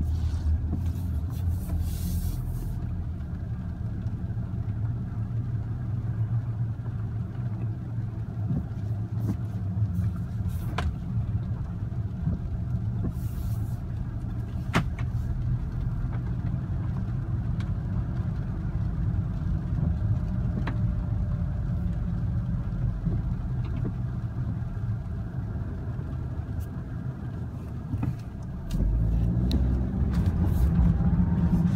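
Engine of a 2015 Audi S3, a turbocharged 2.0-litre four-cylinder, heard from inside the cabin while it drives slowly: a steady low drone over tyre noise, with a few sharp clicks. Near the end the engine note steps up and grows louder as the car pulls away harder.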